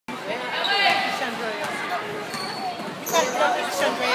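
Basketball dribbling on a hardwood gym floor, with spectators' voices talking and calling out in the echoing gym.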